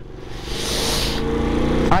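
A man's mouth noise right against a helmet microphone: a breathy blow of air, then a low drawn-out vocal drone for about the last second.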